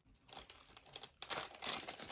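Plastic bag of cake mix crinkling as it is handled, faint at first and busier from about a second in.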